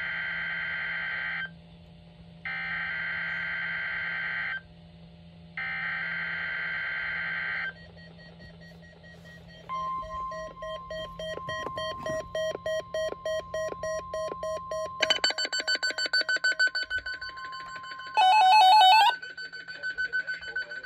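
NOAA Weather Radio weekly test alert. Three raspy data bursts of the SAME header, each about two seconds long with a second's pause between them, are followed about ten seconds in by the steady high weather alert tone, held for about nine seconds. Weather alert receivers set off by the test beep in fast pulses over the tone, louder from about fifteen seconds in, with a short, loudest alarm burst near the end.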